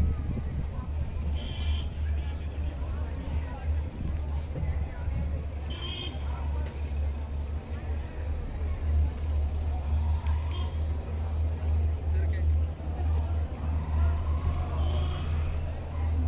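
Steady low rumble heard from inside a moving ropeway gondola, with faint voices of people in the background and a few brief high chirps.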